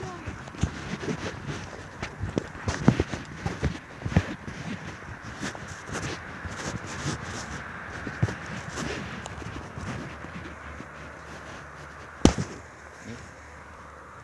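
Irregular sharp clicks and knocks of footsteps on a twiggy dirt path and of a phone being handled while walking, with one loud knock about twelve seconds in.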